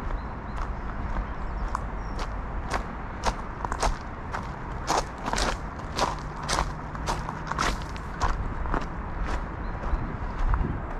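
Footsteps on a dry dirt trail strewn with gravel and dead leaves, about two steps a second.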